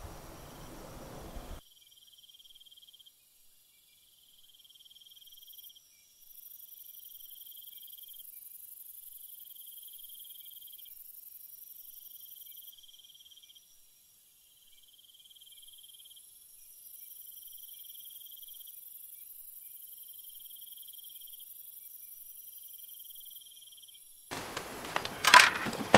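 Crickets chirping in repeated trains about a second long with short breaks, over a steady high trill. A brief stretch of broad noise comes first and stops abruptly.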